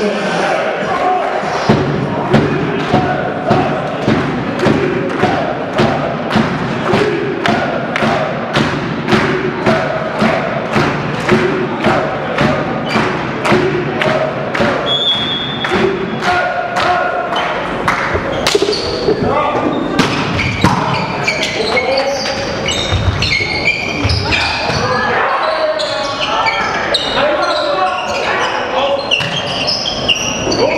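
Spectators clapping in a steady rhythm, about two and a half claps a second, with chanting, until about 18 s in; the referee's short whistle sounds just before the clapping stops. Then come volleyball rally sounds: the ball struck sharply a few times, sneakers squeaking on the hall floor, and players shouting.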